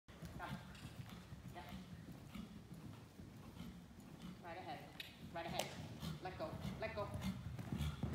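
A horse cantering on the soft sand footing of an indoor arena, its hooves thudding dully and unevenly.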